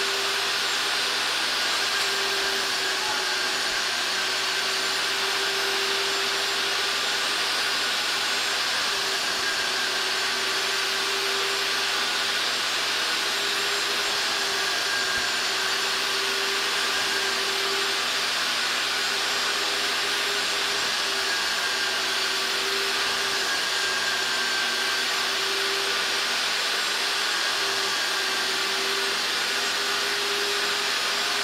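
Sandia carpet extractor running steadily, its plastic wand drawn across a fabric car floor mat to suck out sprayed-on foaming carpet cleaner. It gives a constant suction rush with a slightly wavering motor hum.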